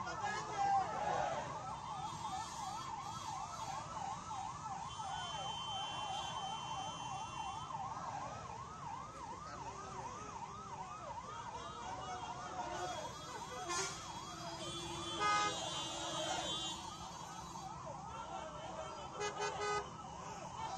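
Vehicle siren sounding a rapid up-and-down yelp, two to three sweeps a second, that fades away after about twelve seconds. A few short sharp sounds and a brief steady tone follow later.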